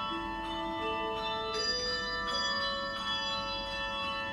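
Handbell choir playing: handbells struck one after another every half second or so, each note ringing on and overlapping the next in a sustained, chiming chord.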